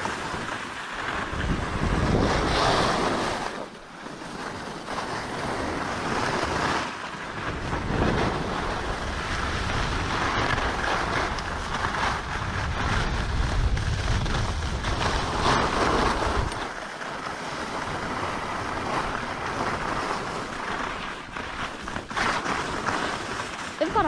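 Skis hissing and scraping over packed snow during a downhill run, with wind rushing over the microphone. The noise swells and fades with the turns and drops away briefly a few times.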